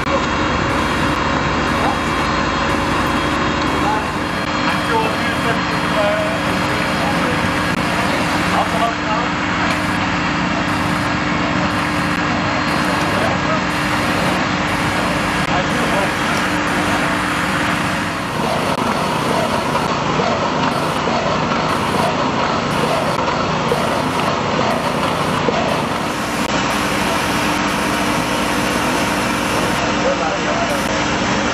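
Fire brigade pumping equipment running steadily with an engine hum, with indistinct voices in the background; the tone of the running noise changes about four and eighteen seconds in.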